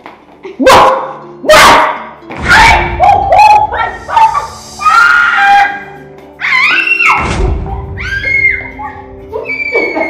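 Children screaming and wailing in repeated loud, high, wavering cries, over background music with steady held tones.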